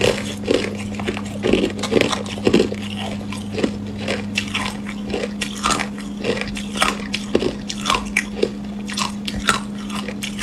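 Hard clear ice being bitten and crunched between the teeth: irregular sharp crunches, roughly one or two a second, over a steady low hum.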